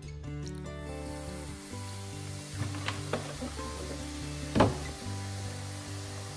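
Vinegar poured onto baking soda in a ceramic dish, fizzing with a steady fine hiss as it foams up, over soft background music. A few light clicks around the middle and one sharper knock about four and a half seconds in.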